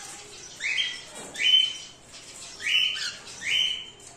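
Cockatiels giving loud rising squawking calls, four in two pairs, each about half a second long.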